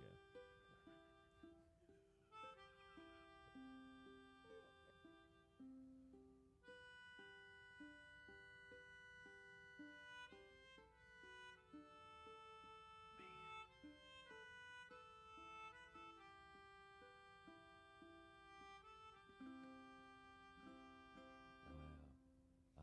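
Melodica played by blowing through its mouthpiece tube: a quiet melody of held notes stepping up and down, accompanied by a small plucked stringed instrument.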